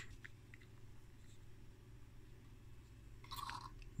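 Near silence: low steady room-tone hum, with a few faint clicks early on and a brief soft sound shortly before the end.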